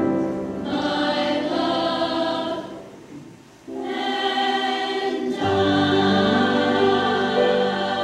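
Mixed high school choir singing held notes in harmony. The voices break off briefly about three seconds in, then come back and sound fuller and lower from about five and a half seconds in.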